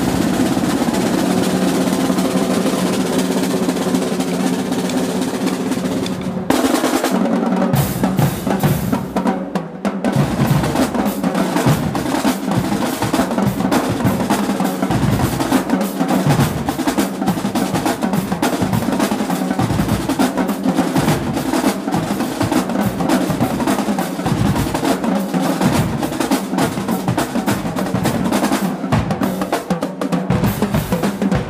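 Marching drumline of snare drums, bass drums and crash cymbals playing: a sustained drum roll for about the first six seconds, then a fast, dense cadence, with a brief break about ten seconds in.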